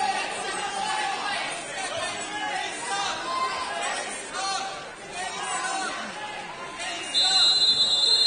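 Spectators chattering in a large, echoing gym. About seven seconds in, a loud, steady electronic buzzer sounds and is still going at the end, the kind that sounds from a wrestling match clock.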